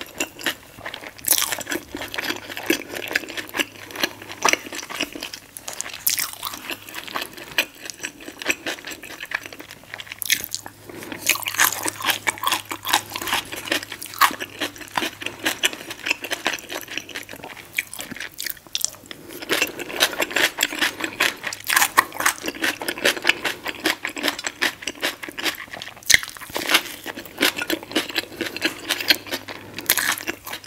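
Close-miked eating sounds: a person chewing and crunching food, with many irregular crisp crackles throughout.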